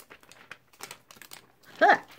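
Clear plastic sticker backing sheet crinkling in a run of short, faint crackles as fingers pick and peel a sticker off it. Near the end a loud, startled "huh!" as the sticker jumps free.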